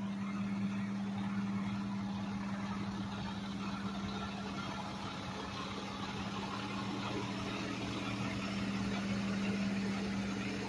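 A vehicle engine idling: a steady low hum at one unchanging pitch, over faint street noise.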